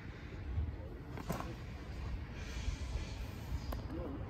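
Low outdoor background rumble with no speech, broken by a couple of faint clicks about a second in and near the end.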